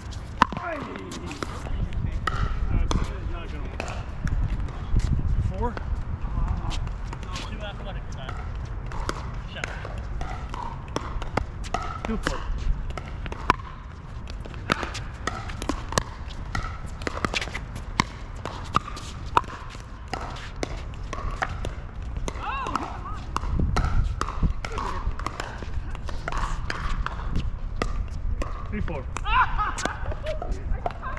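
Pickleball rally: sharp pops of paddles striking a plastic pickleball, at irregular intervals throughout, the loudest about half a second in. Voices are heard in the background.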